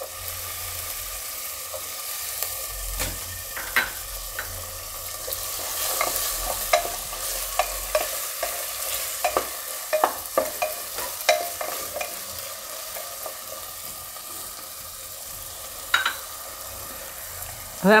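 Diced potatoes and onions sizzling in hot oil in a pressure cooker, stirred with a wooden spatula that scrapes and knocks against the pot. The knocks come thickest in the middle stretch, with one more near the end.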